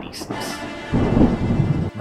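A rumble of thunder, a dramatic sound effect. It swells about a second in and cuts off suddenly near the end.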